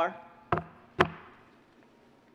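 Two sharp knocks on a wooden lectern, about half a second apart, as a manila folder is handled against it, each followed by a brief echo in the room.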